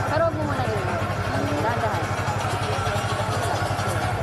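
Motorcycle engine idling with a steady low pulsing, with voices nearby.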